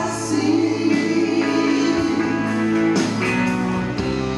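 Live band playing a soft-rock song, with a male voice singing over acoustic guitar and drums.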